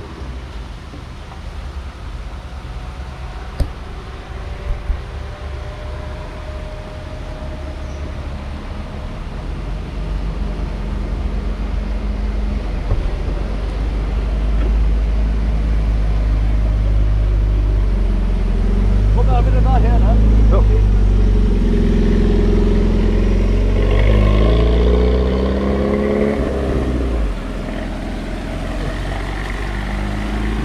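Engine of a Pontiac Fiero-based Ferrari F355 replica approaching and driving past, a deep rumble that builds for several seconds, is loudest around the middle with its pitch shifting, and drops away near the end. A couple of sharp clicks come early on.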